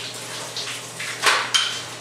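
Water from a hose running onto a flat mop floor-finish applicator head in a utility mop sink, rinsing the finish off. A couple of knocks past the middle as the applicator is handled.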